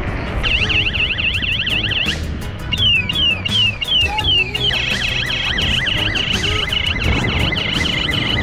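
Electronic siren cycling through its tones: a rapid warble, then a run of about five falling chirps, then a fast high-low wail from about halfway through. Under it, music with a heavy bass beat plays throughout.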